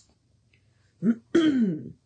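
A woman clearing her throat about a second in: a short catch, then a longer voiced 'ahem' that falls in pitch.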